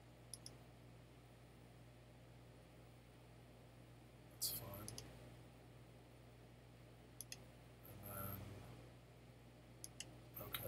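Computer mouse clicking in a near-silent room: a few short, sharp pairs of clicks spread through the stretch as points are picked on screen. A brief noisy sound comes about four and a half seconds in, and a faint low murmur just after eight seconds.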